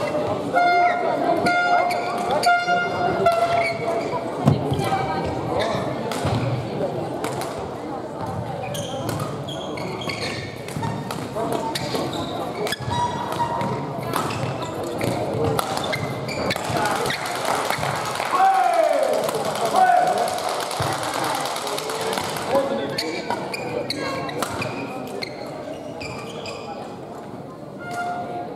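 Badminton rally in a large sports hall: sharp racket hits on the shuttlecock, short shoe squeaks on the court floor, and voices echoing around the hall.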